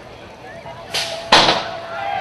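BMX starting gate dropping: a sharp crack just under a second in, then a louder metallic slam about a third of a second later that rings briefly, over a steady tone.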